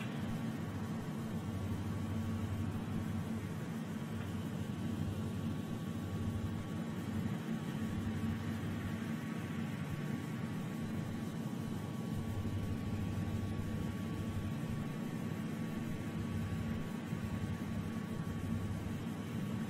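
Steady low rumble with a faint hiss, the live ambient sound from the rocket's launch pad, holding even throughout.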